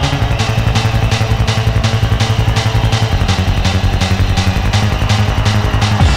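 Early-90s hardcore techno from a live DJ set: a fast, even hi-hat pattern over a held low buzzing bass, without the kick drum.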